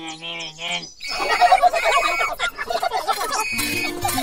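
Cartoonish voice-like sound effects: a held, wavering call in the first second, then a quick jumble of short chattering sounds.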